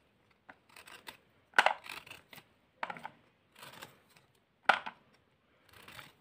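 A kitchen knife cutting through a dried coconut kernel, a series of short scraping strokes at irregular intervals, loudest about a second and a half in and again near five seconds.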